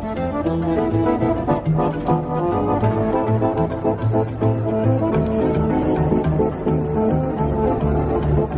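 Street musicians playing a double bass and a piano together: a continuous tune of many short notes.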